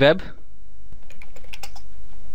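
Computer keyboard typing: a quick run of keystrokes about a second in, entering a search query, over a steady low hum.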